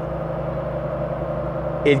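Air-cooled flat-six of a Porsche 911 SC running steadily under part throttle in third gear on a chassis dyno.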